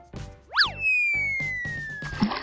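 Cartoon sound effects over bouncy children's background music: a quick boing that swoops up and back down about half a second in, then a long, slowly falling whistle, the stock sound of someone jumping and dropping through the air.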